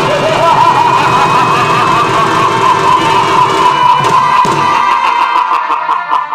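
Chhau dance accompaniment: a shehnai plays a wavering, ornamented melody over dhol and dhamsa drums. The drums drop out about five seconds in, leaving the shehnai holding one steady note.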